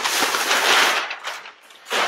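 Masking paper rustling and crinkling as it is pulled back off a painted car hood: a burst of paper noise lasting about a second that fades away, with a few faint ticks near the end.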